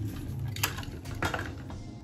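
A Hot Wheels blister pack being opened by hand: stiff plastic crackling and a few sharp clicks as the die-cast car is freed from the card.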